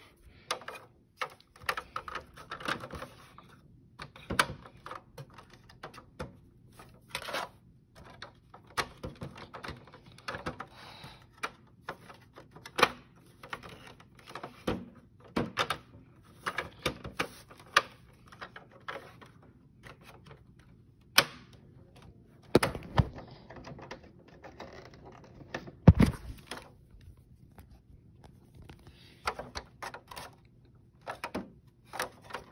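Plastic toy dollhouse pieces being handled and moved: irregular small clicks, taps and knocks, with a few louder thuds past the middle.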